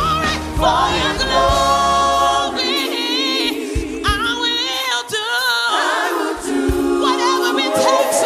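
Gospel song: a singer with a choir, the voices wavering with vibrato. The bass drops away about two and a half seconds in and returns near the end.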